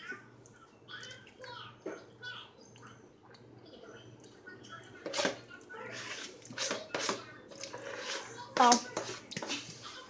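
Indistinct voices talking quietly, with a few short knocks from household handling, then a louder voice near the end.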